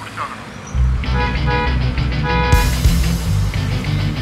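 Film background score: tense, dramatic music starts suddenly about a second in, with a heavy bass and short repeated stabbing notes. Drums and cymbals join about halfway through.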